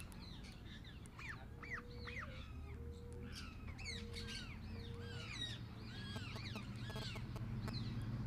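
Small parrots and parakeets in an aviary chirping and chattering: many short, quick, arching chirps overlap all the way through. In the middle come four short, level low notes, evenly spaced, over a steady low hum.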